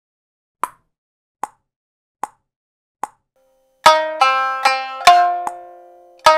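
Four short, evenly spaced clicks counting in, then a shamisen playing a quick phrase of about five sharply plucked notes that ring and decay.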